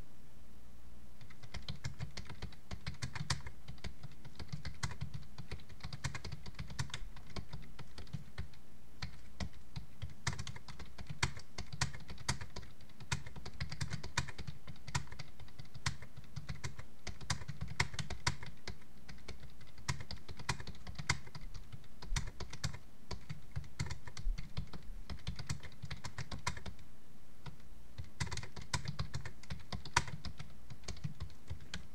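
Typing on a computer keyboard: rapid key clicks in uneven runs with short pauses.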